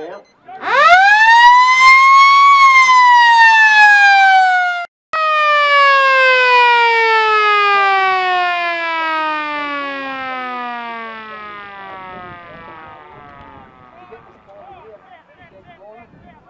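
Football ground siren: a motor-driven siren winds up quickly to a loud wail, then slowly runs down in pitch over about ten seconds until it fades, with a brief dropout about five seconds in. In Australian football this siren sounds the end of a quarter.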